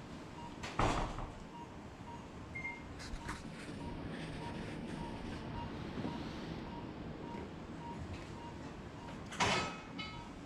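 A steady train of short, evenly spaced beeps from operating-room equipment, over the room's background hum. A louder clattering, rustling noise comes about a second in and again near the end.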